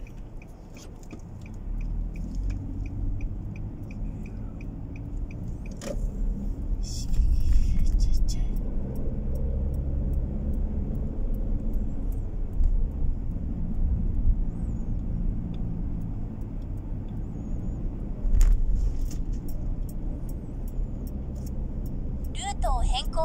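Car engine and road noise heard inside the cabin as the car pulls away and picks up speed, with the turn-signal indicator ticking evenly for the first several seconds. A few short bumps come from the car a few seconds in and again near the end.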